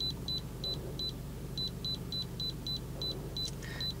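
Short high-pitched button beeps from an iCarsoft i906 handheld scan tool as its down-arrow key is pressed over and over to scroll a menu: about a dozen quick beeps, with a short pause a little over a second in. A steady low hum runs underneath.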